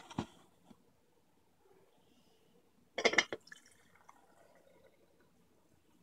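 Bottom-dispensing tea steeper set onto a glass pitcher: a knock at the start and a quick clatter of hard plastic-on-glass clicks about three seconds in as its drain valve opens. Brewed tea then runs out through the valve and trickles into the glass pitcher, faint.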